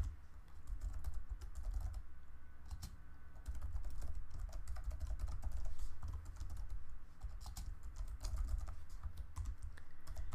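Typing on a computer keyboard: a quick, uneven run of key clicks over a low rumble.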